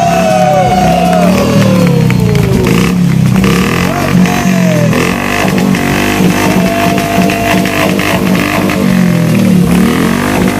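Motorcycle engine revving: a rev falls away over the first couple of seconds, then the throttle is blipped up and down a few more times. Rock music plays underneath.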